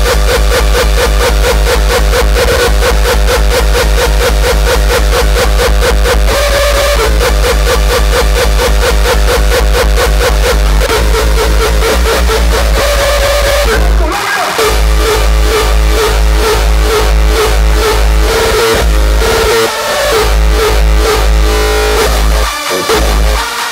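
Frenchcore electronic dance music: a fast, evenly pounding kick drum under a repeating synth melody. About fourteen seconds in the kick drops out for a moment, then returns in a broken, choppier pattern.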